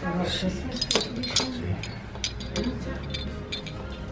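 Ceramic hanging heart ornaments knocking together as they are handled: a string of light, sharp clinks, the loudest about a second in.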